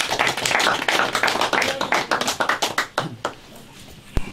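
A small audience applauding with dense hand claps that thin out and die away about three seconds in.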